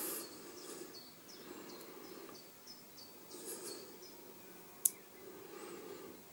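Small neodymium magnet balls being handled and fitted together, with one sharp click just before the five-second mark as pieces snap into place. A faint high chirp repeats about three times a second through the first four seconds.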